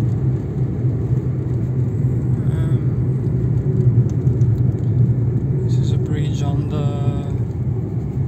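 Steady low rumble of a car driving along a road, engine and tyre noise heard from inside the cabin.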